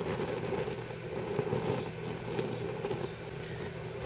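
Pellet-fuelled woodgas gasifier stove burning at full power, its small 12-volt blower fan running: a steady hum of fan and flame.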